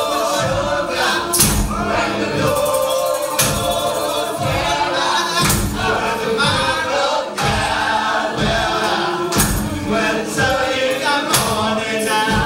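A mixed choir of men's and women's voices singing a Creole spiritual together in harmony, backed by tambourines and other hand percussion. The percussion keeps a steady beat, with a heavier stroke about every two seconds.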